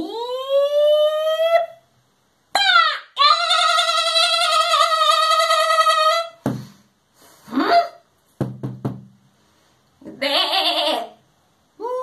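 A puppeteer's voice giving high-pitched character cries: a rising wail, then a long held cry of about three seconds, then a few shorter cries.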